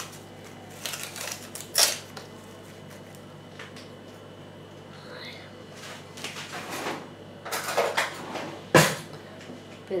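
Scattered knocks and clatter of household items being handled and set down, the sharpest knock coming near the end, over a faint steady low hum.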